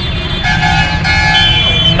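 A vehicle horn held steadily for about a second and a half, starting about half a second in, over a constant low rumble of traffic.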